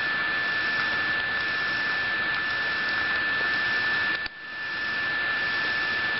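Steady hiss of recording noise with a constant high-pitched whine running through it. The hiss drops out abruptly about four seconds in and swells back over the next second.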